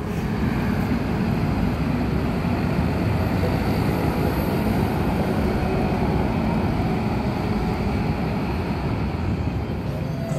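Busy city street traffic, buses and motor scooters, heard as a steady rumble of noise without a break.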